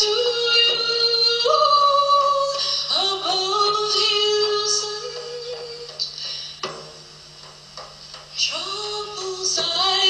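A woman singing solo in long held notes that step up and down in pitch, with a few sharp strikes on a large hand-held frame drum. The singing thins out and grows quieter about seven seconds in, then picks up again near the end.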